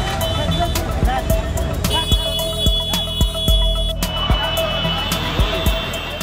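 Background music over crowd and traffic noise on a busy street, with voices and a steady high tone for about two seconds in the middle.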